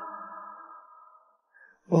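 The echoing tail of a held sung note from an isolated vocal track, fading away over about a second and a half. The next sung phrase starts right at the end.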